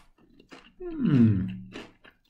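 A man's closed-mouth 'mmm' of approval while chewing a Pringles crisp: one hum about a second in, its pitch falling then holding level, with soft chewing crunches around it.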